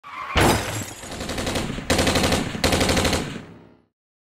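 Automatic gunfire as an intro sound effect: a burst of rapid fire, then two more bursts about two seconds in, dying away near the end.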